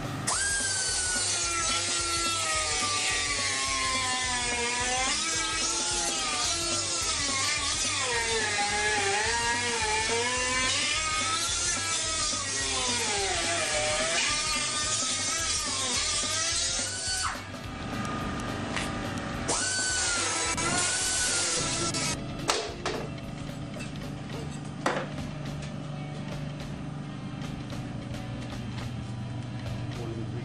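A power tool working metal, its motor pitch sagging and recovering under load for about seventeen seconds. After a short pause it runs again briefly, then gives way to a quieter steady low hum with scattered clicks.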